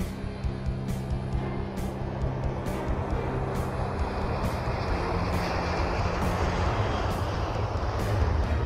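Background music with a steady beat, about one beat a second. From about halfway through, the roar of a single-engine F-35 Joint Strike Fighter swells underneath it as the jet accelerates down the runway and lifts off.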